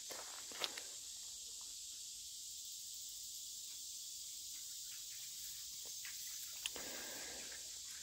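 Quiet outdoor ambience: a steady, faint high hiss with two faint clicks, one about half a second in and one near the end.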